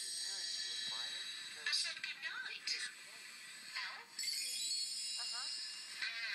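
Indistinct sitcom dialogue playing from a television. A steady high hiss with thin whining tones cuts in suddenly at the start, thins out in the middle and comes back about four seconds in.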